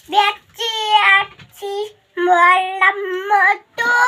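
A young child singing in a high voice, a few short phrases of held, fairly level notes with brief breaks between them.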